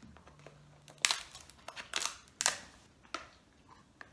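A metal seafood tool cutting and cracking the hard shell of a king crab leg: a string of sharp snaps and clicks. The loudest come about a second in and again near two and a half seconds.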